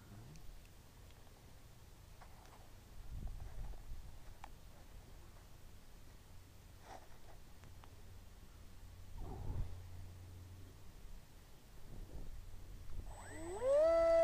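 Faint low hum with a few soft knocks, then near the end the flying wing's electric motor and propeller spin up: a rising whine that settles into a steady high note as it throttles up for launch.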